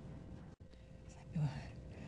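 Low steady hiss of an old television soundtrack with a brief dropout about half a second in, then a short faint murmur of a voice.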